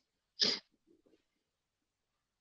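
A single short, breathy vocal sound from a person about half a second in, hissy and high-pitched, followed by a few faint small sounds.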